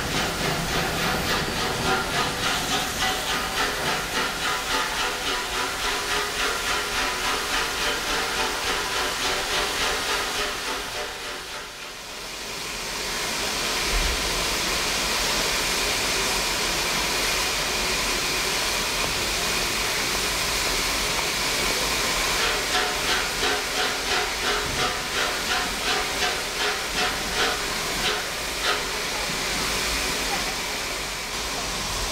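LMS Princess Coronation class steam locomotive standing and blowing off steam, a loud steady hiss, with a regular pulsing beat of about two to three a second in the first third and again near the end.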